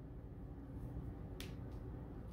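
Quiet room tone with a faint steady hum, broken by one short, sharp click about one and a half seconds in.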